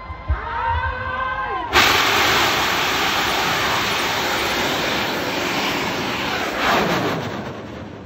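Bang fai saen, a large Thai black-powder festival rocket, ignites on its launch tower about two seconds in with a sudden loud rushing roar of thrust that holds steady as it lifts off. Near the end the roar drops in pitch and fades as the rocket climbs away.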